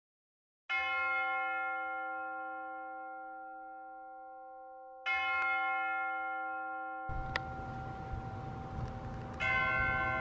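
A church bell struck three times, about four seconds apart, each stroke ringing on and slowly fading. A steady rush of background noise comes in about seven seconds in.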